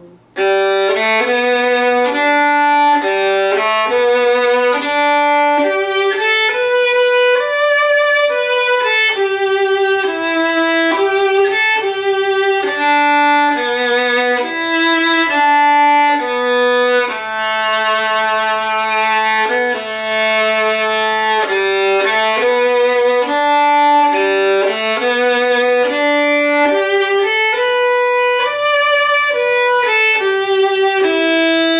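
A solo fiddle playing the A section of a fiddle tune: a single bowed melody line moving from note to note, with a few longer held notes partway through.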